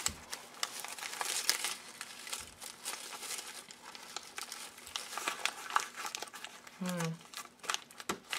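Brown kraft paper crinkling and crackling irregularly as hands bunch and twist it into a tight rope.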